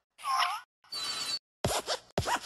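Cartoon sound effects of an animated desk lamp moving: short scratchy squeaks and creaks of its springs and joints, in three quick bursts with silent gaps between them.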